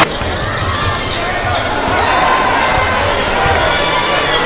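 Game sound from an indoor college basketball arena: the basketball bouncing on the hardwood court over a steady background of crowd noise.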